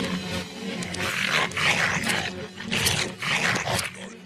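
Animated-film dogs snarling and growling in a fight, played backwards, in a run of loud bursts over a low steady hum.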